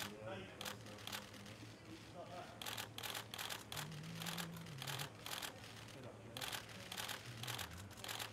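Camera shutters clicking repeatedly at irregular intervals, some singly and some in quick runs of continuous shooting.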